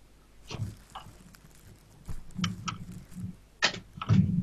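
A quiet stretch broken by a few faint, brief noises: short clicks or breaths, and a low murmur about halfway through.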